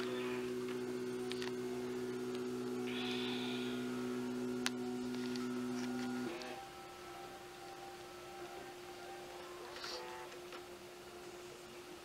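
Steady electrical hum from equipment in a hospital room. It cuts off suddenly about six seconds in, leaving a fainter hum.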